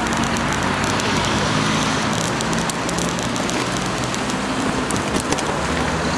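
Steady outdoor din of a crowd and passing road traffic, with scattered crackles and faint distant voices.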